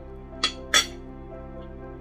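Two quick clinks of metal cutlery against a plate, about a third of a second apart, the second louder, over soft background music.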